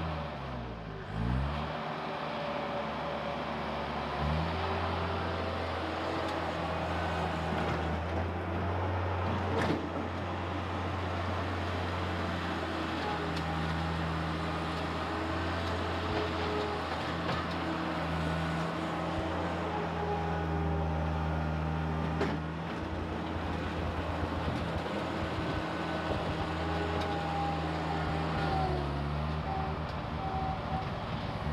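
1995 Gehl 5625SX skid steer loader's engine running as the machine drives and works, its speed dipping and rising in the first couple of seconds and then mostly steady. Two brief sharp knocks, one about ten seconds in and one past the twenty-second mark.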